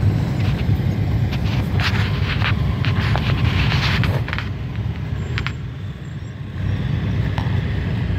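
Motorcycle trikes and cars passing slowly in a line, with a low rumble of engines and tyres. It grows louder as vehicles go by close for the first few seconds, eases off, then rises again near the end as the next car passes.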